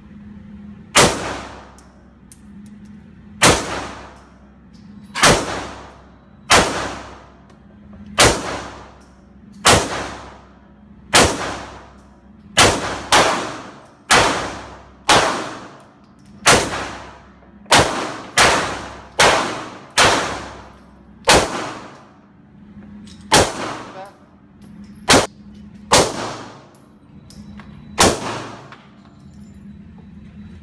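Handgun fired repeatedly in an indoor shooting range: about two dozen sharp shots, each with an echoing tail off the range walls, spaced from about two seconds apart to quick strings of shots half a second apart in the middle. A low steady hum lies underneath.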